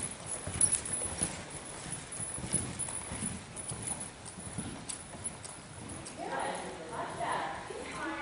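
Hoofbeats of horses cantering and trotting on the sand footing of an indoor riding arena, an irregular run of dull knocks. About six seconds in a voice starts talking over them.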